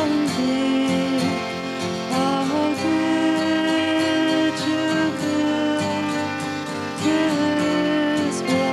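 Live band playing a slow song: a woman's voice singing long held notes into a microphone over guitar accompaniment.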